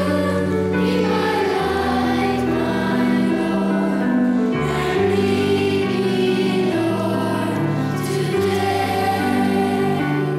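Children's choir singing a hymn, over an accompaniment of steady held low notes that change with the chords.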